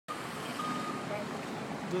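Steady outdoor street noise, with a short high single-pitch beep about half a second in.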